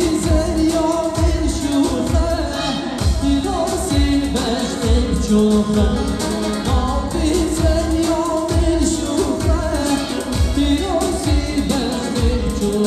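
Live amplified Kurdish music: a male singer's voice over a band with a steady, driving drum beat.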